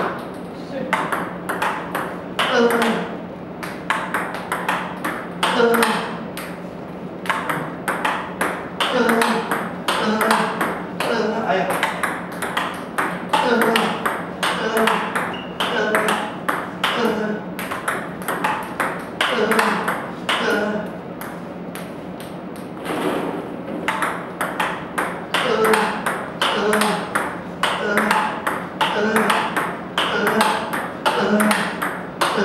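Table tennis balls being struck in multi-ball forehand practice: repeated sharp clicks of ball on paddle rubber and table, about one stroke a second, with a brief pause about two-thirds of the way through.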